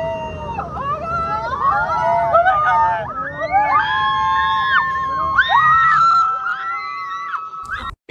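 High-pitched voices screaming and wailing, several at once, held and gliding in pitch, over a low rumble that drops away about six seconds in.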